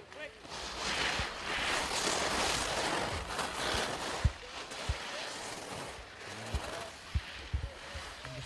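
Ski edges scraping and hissing over hard-packed snow as a slalom skier carves through turns, loudest in the first few seconds, then quieter, with a few short low thumps.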